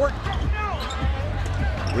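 Live basketball game sound in an arena: a steady crowd rumble, with a basketball bouncing on the hardwood court during a scramble for a rebound.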